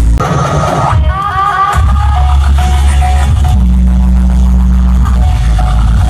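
Electronic dance music played loud over a festival stage sound system: a heavy sustained bass drops out about a second in and comes back, under a bright synth melody with short rising glides.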